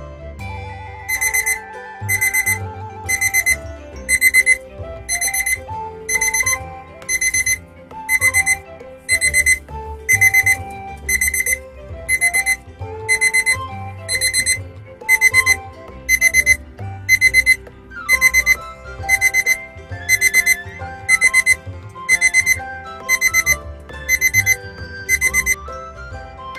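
Alarm clock beeping in quick bursts, about one burst a second, over light background music.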